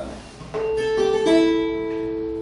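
Flamenco guitar plucked slowly, single notes stepping down in pitch and left to ring into one another, starting about half a second in.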